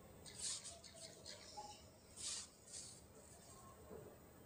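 Fingertip sliding across a smartphone's glass touchscreen while drawing unlock patterns, heard as a few short, soft swishes: one about half a second in and two more past the middle.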